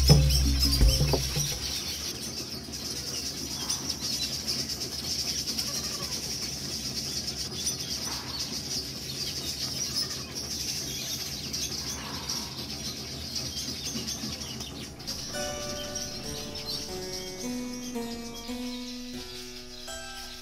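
Birds chirping in a steady high-pitched chorus, with a low rumble in the first second or so. Plucked-string music fades in about fifteen seconds in and takes over near the end.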